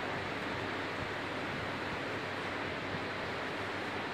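Steady, even background hiss of room noise.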